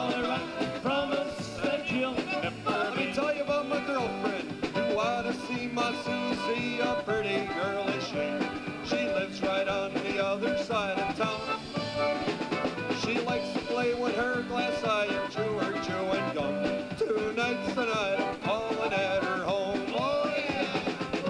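Live old-time Czech dance band playing an upbeat instrumental number with concertina, electric guitar, bass, keyboard and drums.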